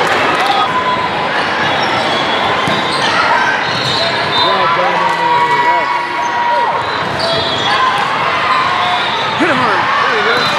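Busy sports-hall ambience in a large, echoing gym: many voices at once, sneakers squeaking on the hardwood floor, and balls bouncing and being hit on the surrounding courts.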